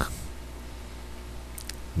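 Room tone in a pause between sentences: a steady low hum with faint background noise, and a faint click near the end.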